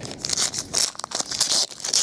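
Foil wrapper of a 2010 Panini Crown Royale football card pack being torn open by hand, a string of short, sharp crinkles and rips.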